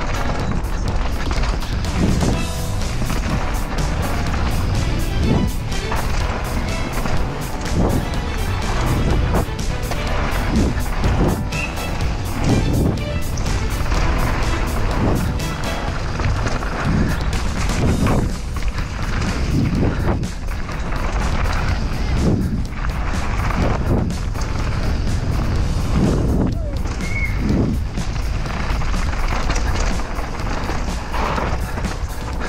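YT Capra enduro mountain bike descending a dirt forest trail at speed, heard from a camera on the bike or rider: a steady rush of wind and tyre noise with frequent knocks and rattles as the bike hits bumps. Background music runs underneath.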